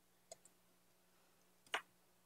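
Near silence: room tone with a faint steady low hum, broken by two faint clicks, a tiny one near the start and a sharper one near the end.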